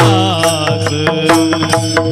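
Varkari bhajan: men's voices singing a devotional chant over a steady harmonium drone, with small brass hand cymbals (taal) struck in a quick, even beat.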